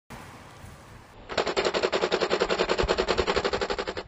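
A long burst of rapid automatic fire, about a dozen sharp shots a second, starting about a second in after a faint hiss.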